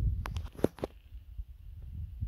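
Wind rumbling on the microphone, then a quick run of about five sharp clicks and knocks within half a second as the handheld camera is handled and turned.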